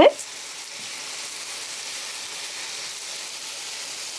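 Soya chunks in oil and spice masala frying in a non-stick pan on medium heat, with a steady sizzle as they are stirred with a silicone spatula.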